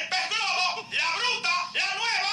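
Several high-pitched voices talking over one another, rapid and unintelligible.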